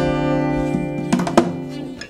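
Steel-string acoustic guitar chord ringing out and slowly fading, with a few sharp knocks about a second in.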